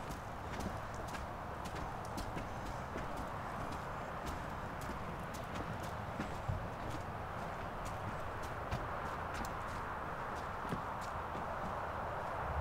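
Footsteps on wooden boardwalk planks: light, irregular knocks and clicks over a steady background noise.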